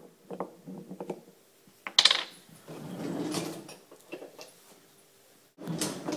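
A metal spoon and a spice container being handled: small clicks and clinks, a louder clatter about two seconds in, and a short scraping, rustling stretch around three seconds as cinnamon is scooped.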